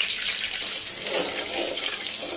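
Hot cooking oil sizzling in a kadai, a steady hiss.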